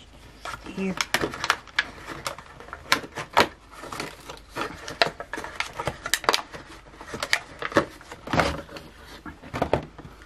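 Cardboard advent calendar being handled while a small gift is taken out of its compartment: an irregular run of sharp crackles, taps and clicks of cardboard and packaging.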